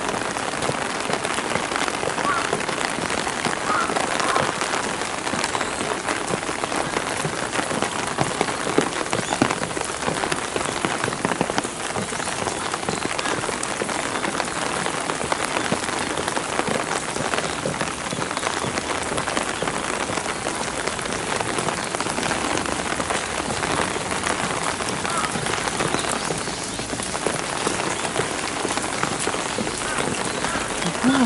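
Steady rain falling and pattering on stone paving and gravel: an even hiss of many fine drops that doesn't let up.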